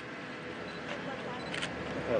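Camera shutters clicking a few times, the loudest about one and a half seconds in, over steady outdoor background noise and faint voices.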